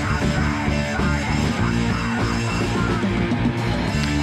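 Punk rock band's demo track playing at a steady loud level, with a raw sound that almost sounds live.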